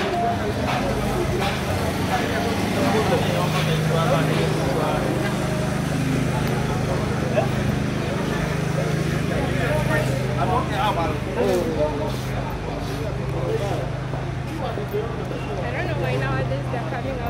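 Busy street ambience: chatter of passers-by over a steady low engine hum.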